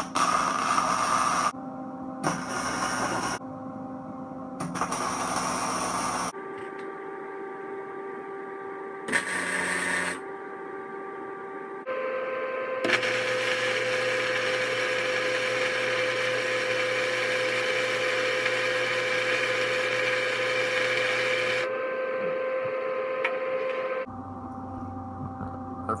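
Electric arc welding on steel plate: three or four short tack welds of a second or two each, then, about halfway through, one continuous weld of about ten seconds, each with a crackling hiss. A steady electrical hum runs underneath.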